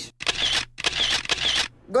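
Camera shutter sound effect clicking three times in quick succession, about half a second apart, as photos are taken.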